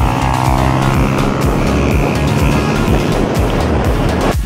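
Motorcycle engine running and road noise as the bike rides along, under a music track.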